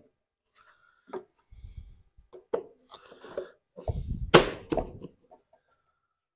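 Scattered plastic clicks, knocks and rustles as a pleated paper air filter is pressed into a lawn mower engine's plastic air cleaner housing and the cover is fitted over it, with a sharp click about four and a half seconds in as the cover goes on.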